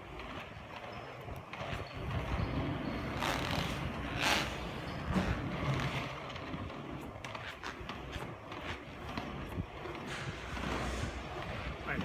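Seba FR180 inline skate wheels rolling fast on asphalt, a steady low rumble with a few brief louder rasps, echoing in an underground car park, with a car driving nearby.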